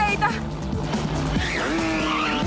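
Cartoon chase soundtrack: background music mixed with the buzz of motor scooters, with a short cry at the very start.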